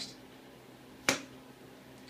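A single sharp click about a second in, as the released twist-throttle grip on a KTM 300 two-stroke dirt bike snaps back shut on its return spring.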